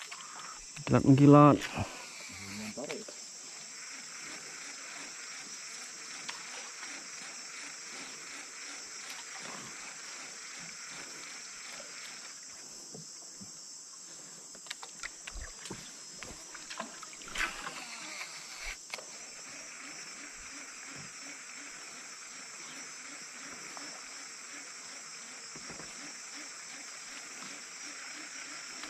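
Steady high-pitched drone of rainforest insects, with a few light knocks and clicks in the middle.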